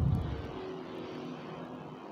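A low thump on the sermon microphones right at the start, fading over about half a second, then a faint low hum of the hall and sound system.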